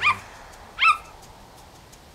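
A cartoon puppy's single short, high yip just under a second in, over a faint steady rush of waterfall water.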